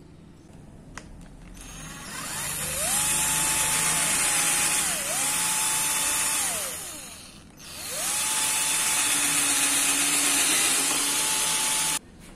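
Hand-held electric drill boring through a clamped 5160 steel knife blank, running in two bursts. The motor whine rises about two seconds in, holds steady, winds down about seven seconds in, then runs up again until it cuts off suddenly.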